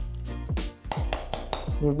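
Background music with a steady beat. Under it come small metallic clinks from pliers gripping and tearing at the metal screw base of an incandescent light bulb.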